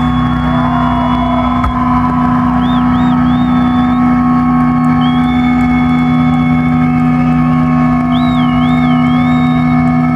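Loud electric guitars ringing out a held, droning chord through the stage amplifiers, with high feedback squeals that bend up and down several times, as a rock show's final chord is let sustain.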